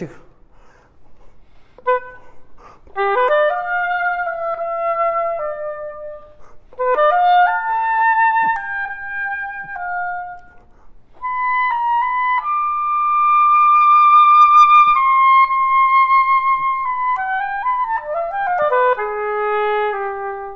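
Solo oboe playing short phrases of stepping notes, then a long high note held with vibrato that swells louder, and a falling run that ends on a low held note. It demonstrates a high note started very quietly and then opened out, with a covered tone.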